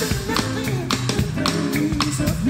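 Live soul-funk band playing: a steady drum beat with sharp regular hits over electric bass and electric guitars.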